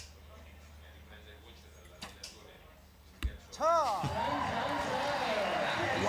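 A single sharp thud from a recurve bow shot about three seconds in. It is followed at once by a crowd cheering and shouting loudly as the arrow scores a ten.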